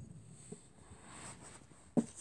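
Faint handling noise of a hand moving close to the phone over carpet, with a soft tick about a quarter of the way in and a short sharp click just before the end.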